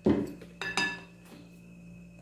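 A metal spoon clinking against a glass bowl twice, at the start and again under a second later, each strike ringing briefly, as grated coconut is scooped out.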